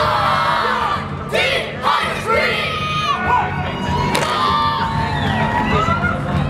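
Children yelling karate kiai shouts in unison, with several waves of high, overlapping yells and cheering, over background music.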